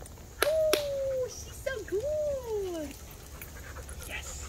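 A dog whining in two drawn-out whimpers that fall in pitch, the second dipping and rising before sliding down. Two sharp clicks come in the first second.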